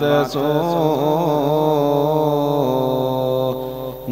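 Theravada Buddhist pirith chanting in Pali: a single voice draws out one syllable for about three seconds, its pitch wavering and then settling, before a short breath-break near the end.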